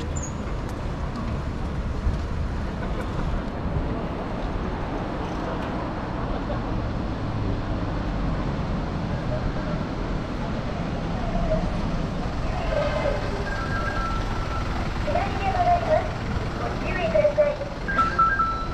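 City street ambience: a steady low rumble of road traffic, with people's voices coming in about two-thirds of the way through and growing louder near the end.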